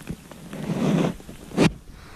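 A kayak paddle stroke swishing through the water, then a single sharp knock about one and a half seconds in, with rain falling on the creek.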